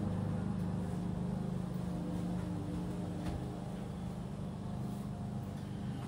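A petrol lawn mower engine running steadily: a constant low drone with no change in pitch.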